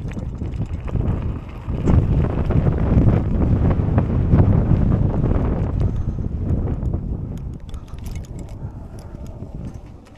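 Mountain bike being ridden over rough trail: wind buffeting the microphone and the bike rattling and clicking over the ground, loudest from about two to seven seconds in.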